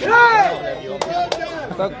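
A man's loud shout, then two sharp cracks of a sepak takraw ball being struck, about a third of a second apart, over crowd chatter.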